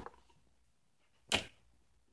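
Near silence broken once, about a second and a half in, by a short swishing handling noise as small plastic toy figures are moved about.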